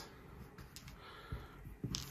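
Faint, scattered clicks of plastic dice being picked up and gathered by hand from a felt-lined dice tray.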